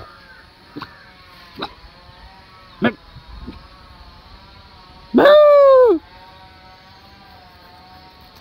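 A single loud drawn-out call, about a second long, rising briefly and then falling in pitch, about five seconds in. A few short sharp sounds come before it.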